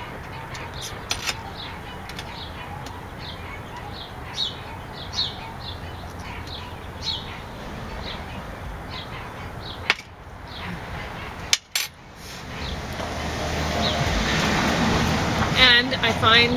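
Small birds chirping in short repeated calls over a steady outdoor background. A couple of sharp clicks come about two thirds of the way in, and then a broad rushing noise swells up over the last few seconds.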